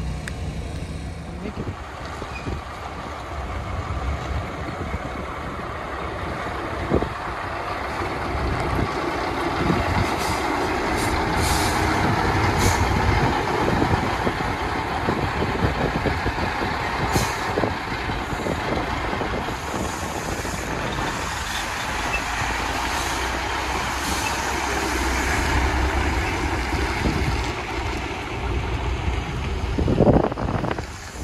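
Diesel engine of a cab-over semi tractor pulling a van trailer as it moves off, a steady drone that grows louder towards the middle, with a few short air hisses from the brakes.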